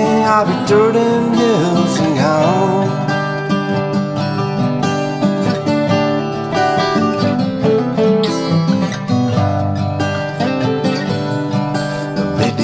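Steel-string acoustic guitars playing an instrumental break in a country-folk song, one guitar picking the lead melody.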